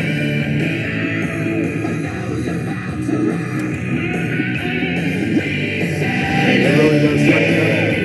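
Rock music with electric guitar playing from the radio of a Panasonic RX-5050 cassette boombox, heard through its speakers.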